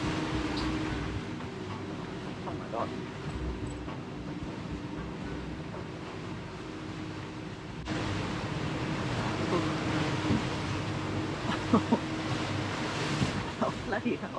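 Steady engine drone heard at the helm of a sailing catamaran running through choppy water, with wind and water noise around it. The noise steps up abruptly about eight seconds in, and a few sharp knocks come near the end.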